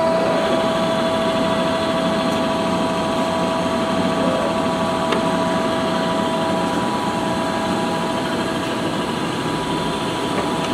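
Large Lodge & Shipley engine lathe running under power, its gearing giving a steady mechanical hum with a whine. The whine fades out about two-thirds of the way through, and there is one faint click about five seconds in.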